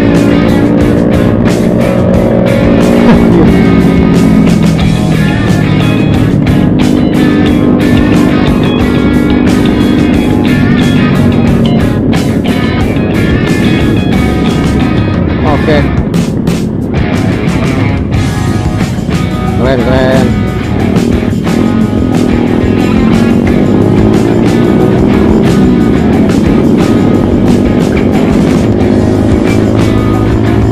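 Motorcycle engine running under way, its pitch falling and rising with the throttle through the gears, over wind rumble on the microphone.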